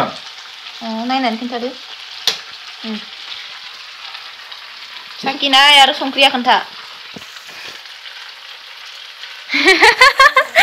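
A steady sizzling hiss, broken by short stretches of a voice about a second in and again around five to six seconds. There is a single sharp click a little after two seconds.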